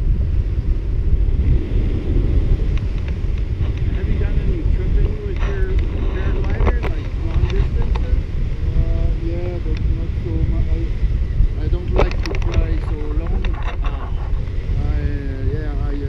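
Wind rushing over a camera microphone in paraglider flight, a steady, loud low rumble, with a few short clicks about twelve seconds in.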